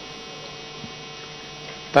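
Steady electrical hum with a stack of evenly spaced tones, carried by the microphone and sound system.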